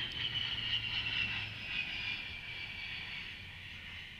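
Four-engine turboprops of a C-130J Super Hercules flying past low: a high engine whine over a low propeller hum, both sliding slowly down in pitch as the aircraft goes by, loudest in the first second or two.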